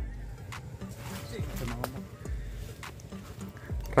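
Quiet background with faint voices and music, and no clear sound event.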